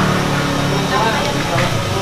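Indistinct talking over a steady low background hum, with a short knock about one and a half seconds in.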